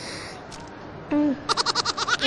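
A boy singing a Punjabi folk song unaccompanied. A second-long break in the singing with background murmur is followed by a short falling note, then a rapid warbling run of quick pulses.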